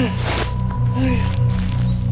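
Film score with low sustained notes and a steady pulse underneath. There is a short breathy rush of noise at the start, and two brief low moans, one at the start and another about a second in.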